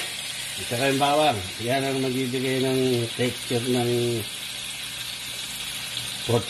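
Pork chops frying in butter in a cast-iron skillet: a steady sizzling hiss. A man's voice talks and hums over it from about one second in to about four seconds.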